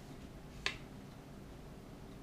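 A single sharp click of stiff origami paper being folded and creased by hand, about two-thirds of a second in, over a low steady background hum.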